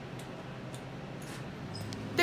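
Quiet room tone: a low, steady hum with a few faint, short ticks.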